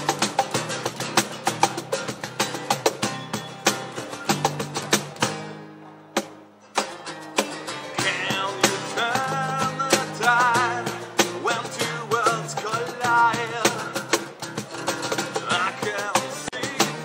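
Acoustic guitars strumming a rock song over electric bass. The playing drops away briefly about six seconds in, then comes back, and from about eight seconds a male voice sings held, wavering notes over it.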